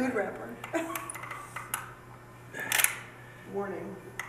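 Caulking gun being worked, with a few trigger clicks and one short, louder scraping burst about two-thirds of the way through, under brief murmured voices.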